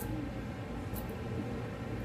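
A steady low background hum, with a couple of faint brief scratches as tape is picked at and peeled off the cut end of a steel-braided PTFE fuel hose held in a vise.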